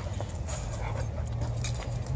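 Leashed dogs greeting and playing, with faint dog whimpers over a low, steady rumble.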